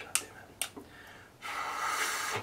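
A few small clicks as a recorder is handled, then a breathy rush of air blown through it with no clear note. The recorder has jammed up.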